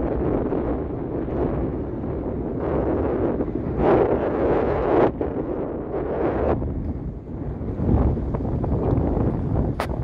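Wind buffeting the phone's microphone in uneven gusts, strongest about four to five seconds in, with a brief click near the end.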